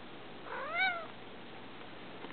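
A domestic cat meowing once, about half a second in: a short call that rises and then falls in pitch.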